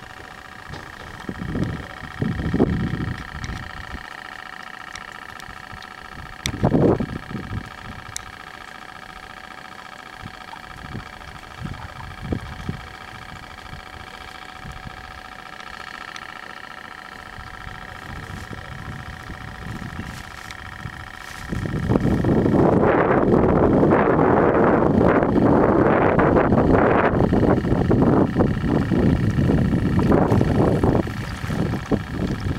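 Wind buffeting an outdoor microphone: short gusts at first, then heavy and continuous from about two-thirds of the way in, over a steady background hum.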